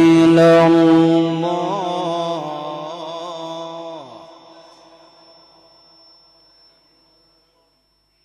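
A man's voice in melodic Quran recitation, holding one long sung note with a few small ornamental turns. About four seconds in the note ends and trails away into the hall's echo, leaving near silence.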